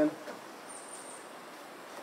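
Quiet outdoor background hiss with one brief, faint, thin high-pitched note a little under a second in.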